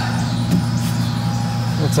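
A steady low machine hum with a faint high tone above it.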